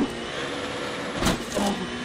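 Citroën DS3 WRC's 1.6-litre turbocharged four-cylinder engine running at speed, heard from inside the cockpit with gravel and tyre noise. A thump comes about a second and a quarter in.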